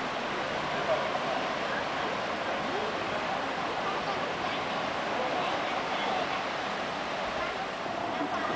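Steady rushing of water as a canal lock chamber drains, with faint voices beneath it.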